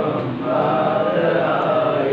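A man chanting in a steady recitation, his voice holding sung notes rather than speaking.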